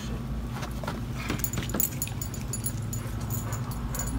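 A knife cutting through jackfruit rind on a plate while sticky pulp and pods are pulled apart by hand. It makes irregular clicks and scrapes, with a few brief high squeaks in the middle.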